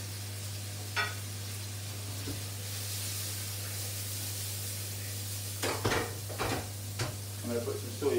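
Fish cakes sizzling as they fry in pans on a gas hob, a steady hiss over a low hum. There is a sharp click about a second in and a few quick knocks around six to seven seconds in.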